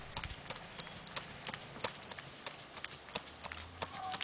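Faint hoofbeats of a paint mare moving over a dirt arena: a steady series of soft footfalls, about three a second.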